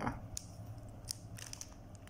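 A few faint, sharp crinkles and clicks from a plastic bread wrapper being handled and squeezed.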